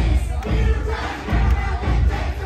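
Dance music with a heavy bass beat played loud over a DJ's sound system, with a crowd of dancing guests shouting and singing along.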